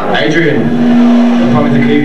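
Live black metal band through the PA: a voice with a steady held note underneath that comes in about half a second in.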